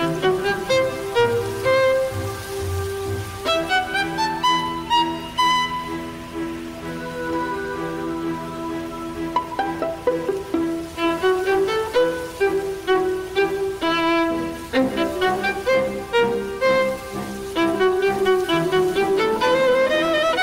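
Solo violin playing a melody over a recorded karaoke backing track, with sustained notes over a steady low drone and a rising slide near the end.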